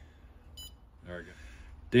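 A single short, high electronic beep from the Pentair Fleck 5800 XTR2 control valve's touchscreen, about half a second in, as the screen is tapped to go to the next settings page.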